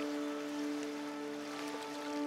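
Soft background music holding one sustained chord of steady notes.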